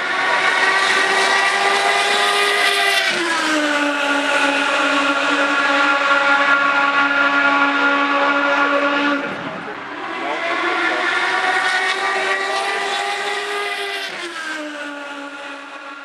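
Indy car Honda V8 engine at racing speed, a loud, steady high-pitched whine. Its pitch drops sharply about three seconds in and again near fourteen seconds as the car goes by, with a brief dip in loudness around nine seconds between the two passes.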